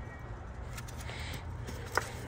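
Faint plastic clicks from an ignition coil's electrical connector being worked loose by hand, with one sharp click near the end, over a steady low hum.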